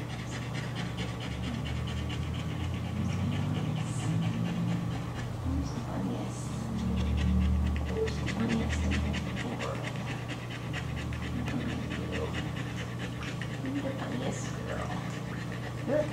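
Greyhound panting rapidly and rhythmically, with no break, over a steady low hum.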